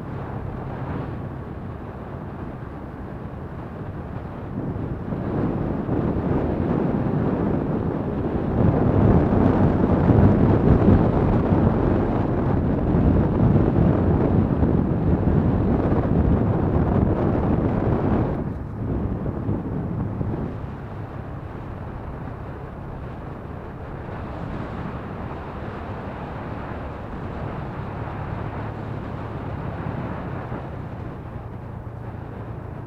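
Wind rushing over the microphone of a moving motor scooter, over the steady low hum of its small engine and tyres on the road. The wind noise swells about five seconds in, is loudest around ten seconds, and drops away sharply at about eighteen seconds.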